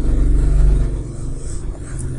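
Low engine rumble of passing road traffic, loudest in the first second and then easing off.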